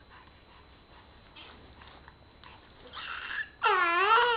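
Baby vocalising: after a quiet start and a few soft breathy sounds, a loud, high-pitched squeal that rises and falls in pitch begins near the end.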